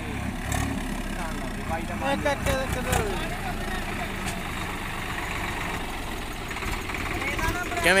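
Diesel farm tractor engine running steadily as the tractor drives along, with faint men's voices in the background and a louder voice right at the end.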